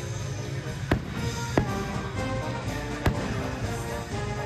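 Aerial fireworks shells bursting: three sharp bangs, about a second in, at about one and a half seconds and just after three seconds. Music from the show's soundtrack plays steadily underneath.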